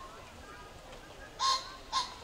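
Two short, loud bird calls about half a second apart, over faint crowd chatter.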